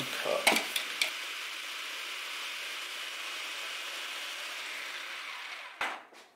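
Food processor running, its blade chopping cooked turkey with a steady whir, then stopping with a click near the end.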